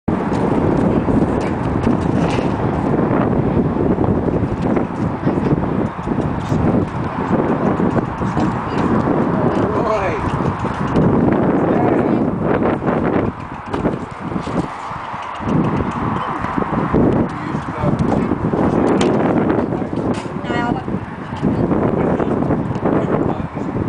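A Welsh cob's hooves clip-clopping on gravel as he is led up to a horsebox, with sharper knocks around the middle as a hoof is set on the loading ramp.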